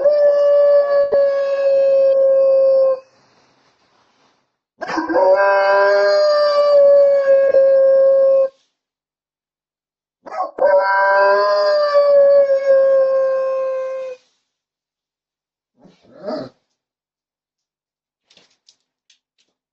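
A Dobermann howling, picked up by a Ring doorbell camera's microphone: three long howls, each held on one steady pitch that sags slightly at the end, then a short faint whimper near the end.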